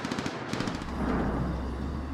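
Battle sound effect of rapid automatic gunfire over a low, continuous rumble that sets in about a second in.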